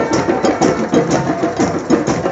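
A group of hand drums and other percussion playing together in a fast, dense, steady rhythm, with sharp clicks on top.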